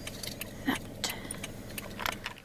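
A car's engine idling with a low steady hum, under scattered light clicks and rattles, the loudest about two-thirds of a second in and again just after one second.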